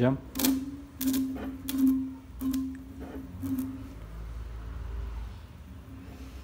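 Sparks snapping as the bare output leads of a hand-spun homemade permanent-magnet alternator are touched together, shorting its winding: five sharp cracks in the first four seconds, each followed by a short low hum.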